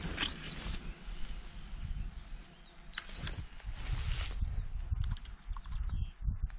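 Outdoor ambience with a low, uneven rumble and a few light clicks and rustles. An insect starts buzzing at the very end.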